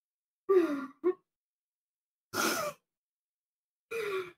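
A woman's sighs and a breathy gasp as she is overcome with emotion: a falling sigh about half a second in, a breathy gasp about two and a half seconds in, and another falling sigh near the end, with dead silence between them.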